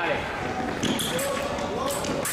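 Fencing shoes squeaking and stepping on the piste during a sabre bout's quick footwork, with sharp high clicks about a second in.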